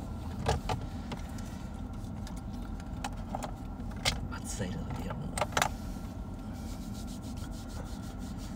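Steady low rumble of a car's cabin, with several short sharp clicks scattered through it.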